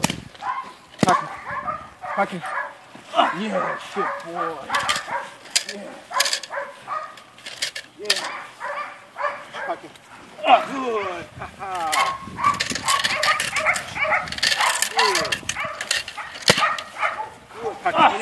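Dogs barking, yipping and whining in irregular bursts, mixed with a person's voice and sharp smacks every few seconds.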